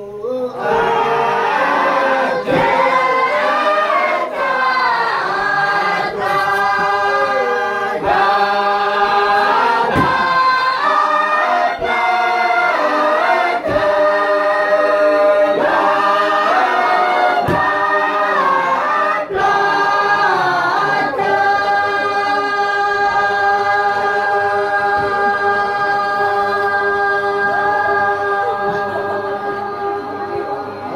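A group singing together unaccompanied, in several voices, with a sharp knock about every two seconds. About twenty seconds in the singers settle onto one long held chord.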